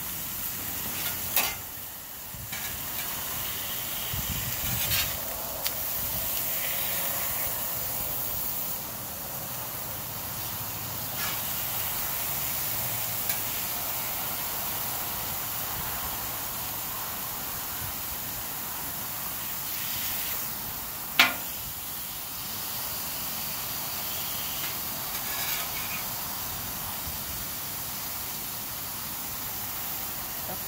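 Shrimp, sliced beef and vegetables sizzling steadily in oil on a hot Blackstone steel flat-top griddle. A metal spatula clacks against the steel plate about five times, loudest a little past two-thirds of the way through.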